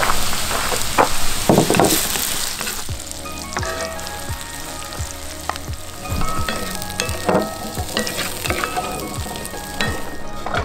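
Chopped onions and garlic sizzling and crackling in a hot cast iron skillet over a campfire. The sizzle is loudest for the first three seconds or so, then drops to a quieter crackle with scattered clicks.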